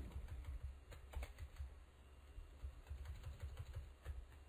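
Faint, irregular clicks and taps of a computer keyboard and mouse as text is selected and deleted.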